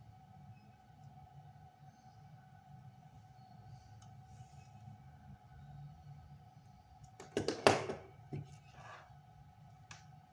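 Faint steady hum with a thin steady tone, broken about seven seconds in by a brief clatter of knocks and clicks from small tools handled on a wooden desk, then a few lighter knocks.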